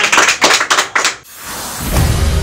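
A small group of people clapping their hands, fast and steady, until the clapping stops about a second in. A rising swell of noise then builds into music near the end.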